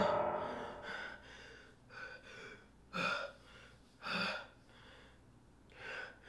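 A boy's heavy, gasping breaths, short sharp intakes and outbreaths about once a second, the two loudest about three and four seconds in.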